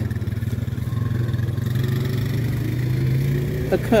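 A motor engine running as a steady low drone that swells and rises slightly in pitch in the middle, then eases off.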